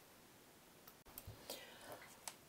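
Near silence, with a few faint clicks and soft mouth sounds in the second half.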